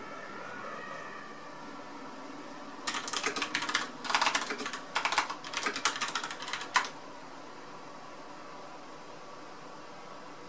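Rapid typing on a computer keyboard for about four seconds, a quick run of key clicks that ends with one louder keystroke.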